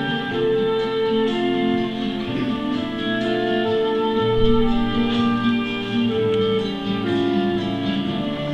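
An instrumental backing track plays from a portable stereo: a melody over sustained chords, with no singing.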